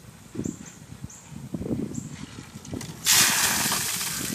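A bucket of ice water dumped over a man's head, splashing onto him and the concrete driveway: a sudden loud rush of pouring, splattering water about three seconds in.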